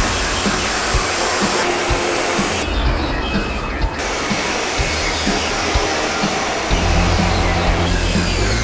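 Steady rushing factory noise, a broad hiss that shifts abruptly in tone several times, with background music and its bass line underneath.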